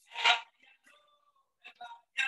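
A man's voice speaking a last short word, followed by a brief near-quiet pause.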